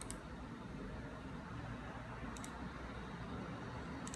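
Low steady background hum with a single faint click at the start and a quick double click about two and a half seconds in, from a computer's pointer button being clicked in a file window.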